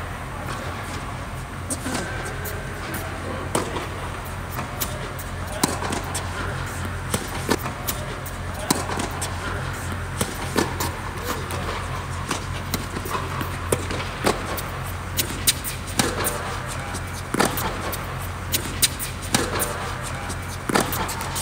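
Tennis balls struck by rackets and bouncing on an indoor hard court: sharp pops at irregular intervals, over a steady low hum.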